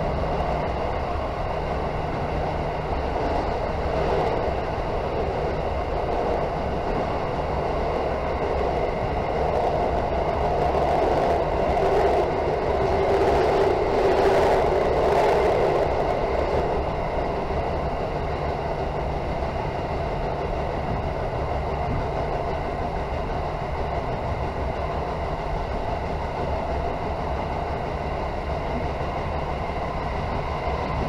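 Steady running noise of a local passenger train, heard from inside the carriage as it travels through a tunnel. The noise swells and grows louder for a few seconds around the middle, then settles back.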